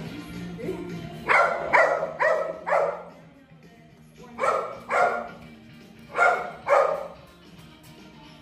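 A small dog barks eight times, in a run of four quick barks about a second in, then two, then two more, over background music.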